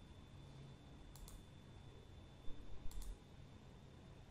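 Faint computer mouse clicks over quiet room tone, in two quick pairs: one a little past a second in and one about three seconds in.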